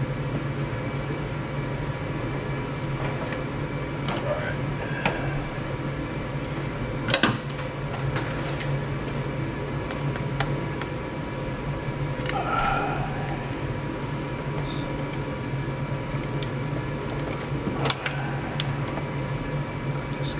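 A steady low hum, with a few sharp clicks and knocks, about seven seconds in and near the end, from hand work on a hose clamp in the engine bay.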